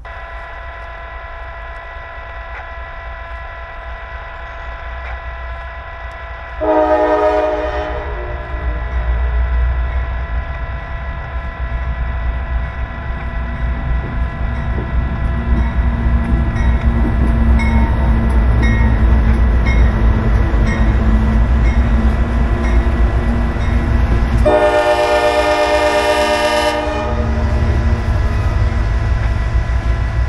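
CSX diesel freight locomotive approaching, its engine rumble and the train's rolling noise growing louder, with two horn blasts: a short one about seven seconds in and a longer one of about two seconds near twenty-five seconds in. A steady high hum runs underneath.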